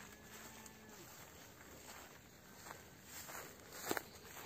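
Faint outdoor sound: a distant, drawn-out low animal call that fades out about a second in, then a few soft crunching steps on dry grass, the loudest just before the end.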